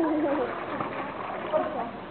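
Indistinct voices, without clear words, over the light swish of pool water as a toddler is moved through it.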